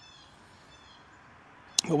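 Faint outdoor ambience with a small bird chirping: a quick run of short, high, arching chirps in the first second. A man's voice comes in just at the end.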